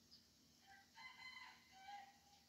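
A rooster crowing once, faintly, starting about half a second in and still going at the end.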